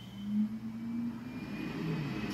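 Opening sound effect of a K-pop music video: a low, steady droning tone that swells about half a second in and gives way to a low rumble that builds.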